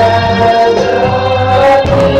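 Live contemporary worship song: a small group of voices singing together in held, sustained notes over electric keyboard accompaniment.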